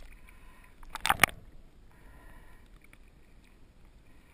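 Water splashing and sloshing at a waterproof camera held just below the surface, with a cluster of loud splashes about a second in, then quieter, muffled water noise.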